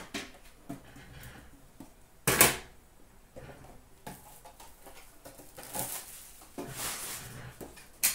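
Handling noises from trading-card boxes and tins on a glass counter: a sharp knock a little over two seconds in, with softer clicks and rustling around it.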